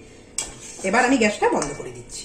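A single sharp clink of a kitchen utensil against cookware about half a second in, as the finished raw-banana kofta curry is handled.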